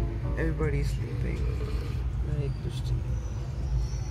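Steady low rumble of a moving passenger train heard from inside the coach, with brief voices over it.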